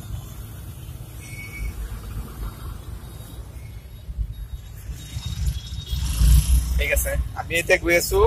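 Low, steady rumble of a car's engine and road noise heard from inside the cabin, swelling into a louder rumble with a hiss about six seconds in. Voices begin near the end.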